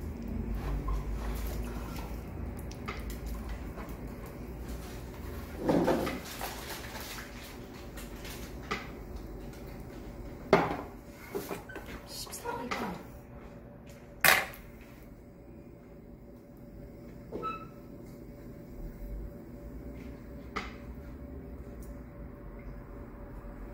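Electric potter's wheel running with a steady hum and low rumble while wet clay is pressed and shaped by hand. Scattered sharp knocks and clunks are heard, the loudest about ten and fourteen seconds in.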